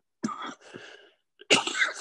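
A man coughing twice into his hand, the second cough near the end louder than the first.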